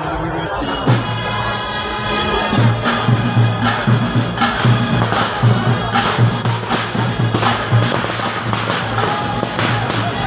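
Festival music: a held low note comes in about a second in, then drums strike in a steady, quick rhythm from about two and a half seconds in, over crowd noise.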